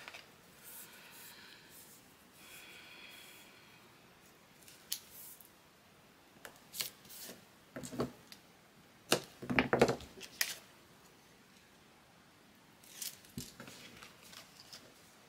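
Adhesive tape pulled off a roll in two pulls of about a second each, with a faint rasping hiss. These are followed by scattered short clicks and crinkles as the tape and paper are handled and pressed down.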